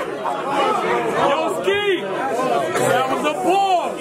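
Several men's voices talking and calling out over one another: crowd chatter with no single clear speaker.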